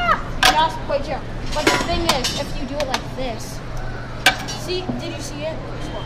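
High-pitched children's voices with wordless exclamations and laughter, mixed with a few sharp clicks and knocks from a hands-on exhibit being handled, over a steady low hum.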